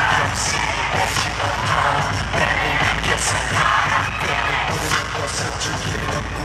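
Live K-pop music played loud through a concert sound system, with a heavy bass beat and singing, heard from within the audience as fans cheer over it.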